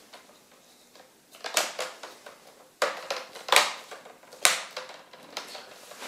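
Plastic screen bezel of a Dell Latitude E6540 laptop being pressed onto the display lid, its clips snapping into place in several sharp clicks about a second apart, with light plastic handling between them.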